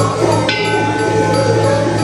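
A bronze bowl bell (qing) is struck once about half a second in and rings on with a clear, sustained tone. Under it run a steady low hum and background music.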